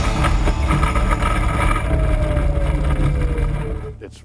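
Yuneec E-Spyder ultralight's electric motor and propeller running, heard from a wing-mounted camera with heavy wind rumble on the microphone. A thin whine falls slowly in pitch over the last two seconds before the sound drops away.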